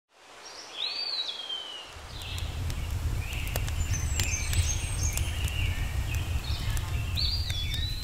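Forest ambience: birds calling, with a sliding call about a second in and again near the end and scattered chirps in between. A steady low rumble runs underneath from about two seconds in.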